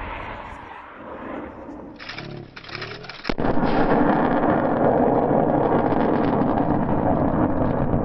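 Surface-to-air missile launching: a sudden blast about three seconds in, then the rocket motor's loud, steady rushing noise.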